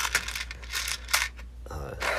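Small plastic parts-organizer drawer pulled open and loose LEGO pieces clattering inside as a hand rummages through them: a few sharp clicks and rattles.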